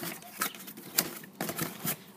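Cardboard boxes and crumpled kraft packing paper handled inside a shipping box: about four short, sharp taps and light rustles as a hand rummages for the next candle.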